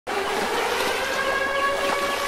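Water splashing and churning as several people kick their feet in a swimming pool, with a few steady held tones underneath.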